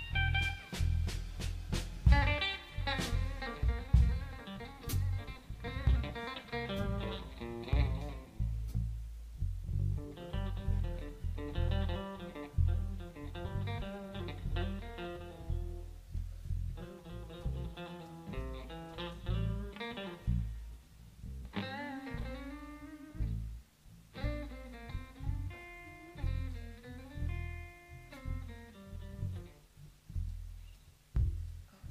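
Blues band in an instrumental stretch: a lead guitar plays single-note lines with bent notes over a low band backing, with brief lulls between phrases.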